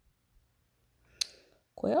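A single sharp click about a second in, during a quiet pause, followed by a voice starting to speak near the end.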